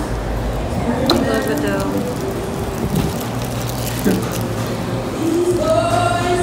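Indistinct voices of people talking in a café, over a steady low hum, with a couple of faint knocks.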